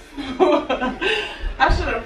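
A person chuckling and laughing in short bursts, with a low thump about three-quarters of the way through.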